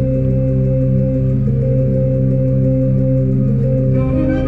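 Live orchestra holding a low, sustained, droning chord with no clear melody.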